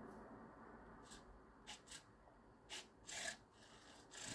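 Near silence with a few faint, brief scratchy rubbing sounds spread through it.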